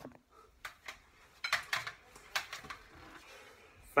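A few light, irregular clatters and knocks of kitchenware being handled.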